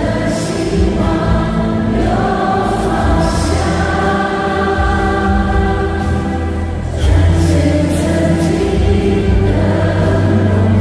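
A group of women singing a Chinese-language song together into microphones, with instrumental accompaniment; the singing gets louder about seven seconds in.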